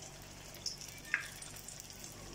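A rice and vegetable kabab patty sizzling quietly as it deep-fries in hot oil, with a couple of small pops.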